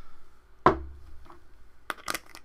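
A single sharp thump about two-thirds of a second in, trailing a short low rumble, then a light click near the end.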